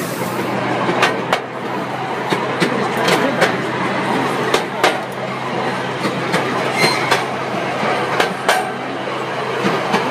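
Miniature ride-on railway train running along its narrow-gauge track, its wheels clicking irregularly over the rail joints under a steady low hum.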